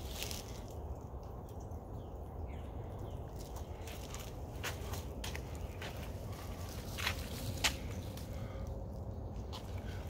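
A steady low rumble with a few light ticks and scuffs: footsteps and handling noise on the phone's microphone as the person filming walks around the car.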